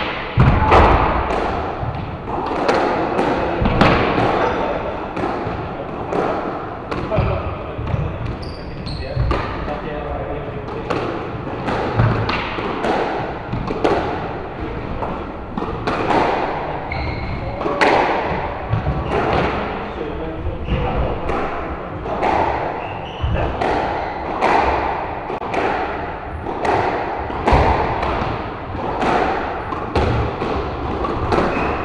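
A squash ball struck by rackets and slapping off the court walls during a long rally, sharp echoing cracks coming every second or so, with the players' footfalls on the wooden floor.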